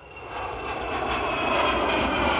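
Jet engines of a Boeing P-8 Poseidon and two escorting fighter jets passing overhead: a steady rush of engine noise with high turbine whine tones, growing louder over the first second and a half.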